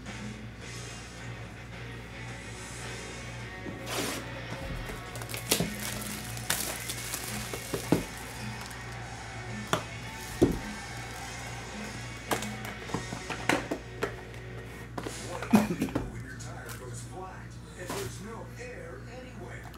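A sealed cardboard trading-card box being slit open with a box cutter and its packs taken out and stacked: scattered clicks, taps and rustles of handling, over steady background music.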